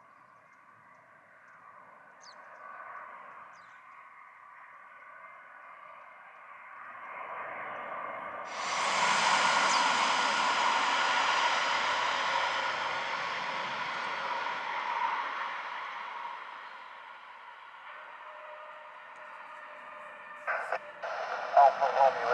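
Engines of a twin-engine jet airliner whining on approach, building slowly, then jumping much louder about eight seconds in and fading away over the following several seconds.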